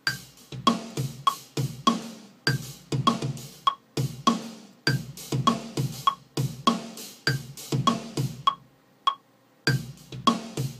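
Electronic drum-machine beat, kick and snare with clicky wood-block-like percussion, playing a steady pattern of about three hits a second. It drops out briefly near the end and starts again.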